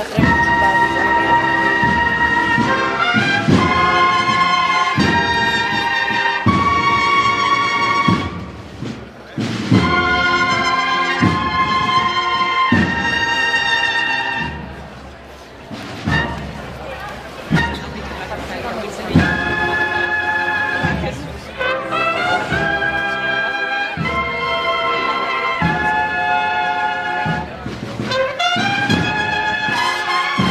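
Brass band playing a processional march: trumpets and trombones in long held notes, phrase after phrase, with short breaks about nine and fifteen seconds in.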